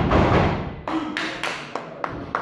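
Wrestlers hitting the ring mat: a heavy thud at the start, then several sharp taps and slaps on the canvas.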